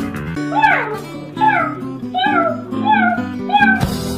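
A cat meowing five times in a row, each meow falling in pitch, over steady acoustic guitar music.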